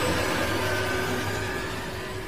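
A dense, rumbling sound effect with a steady low hum and a few faint held tones. It slowly fades, accompanying an animated logo sting.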